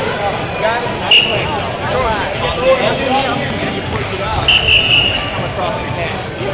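Spectators talking and calling out in a gymnasium, with a short referee's whistle blast about a second in, starting the wrestling bout, and a longer whistle blast a little past the middle.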